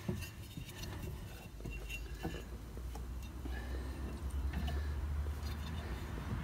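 Scissor jack being cranked by hand with its rod handle, giving small scattered metal clicks and clinks as it raises a car. A low rumble sits underneath from about a second and a half in.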